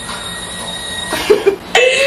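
A thin, steady high-pitched whine over a hiss for about the first second, then a woman laughing in short bursts that grow louder near the end.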